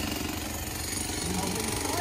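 A small machine running steadily with a rapid pulsing rattle.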